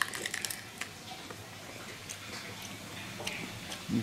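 A bite into a raw, crunchy Black Hungarian pepper: a crisp snap right at the start, then a quick run of small crackles over the first second as it is chewed.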